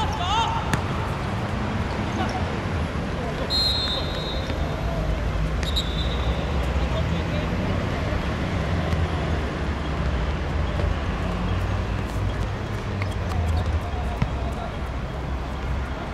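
Outdoor small-sided football game: players' distant calls and the thuds of the ball being kicked, over a steady low rumble. Two brief high whistles sound a few seconds in, about two seconds apart.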